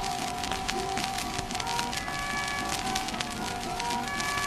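A 1924 acoustic 78 rpm record of harmonica and guitar playing an instrumental passage, the harmonica holding a steady note over the guitar. The worn shellac's surface crackle runs under the music.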